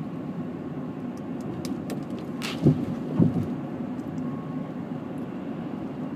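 Steady road and engine noise inside the cabin of a moving 2000 Honda Accord. Two short, louder low sounds come just past halfway, about half a second apart.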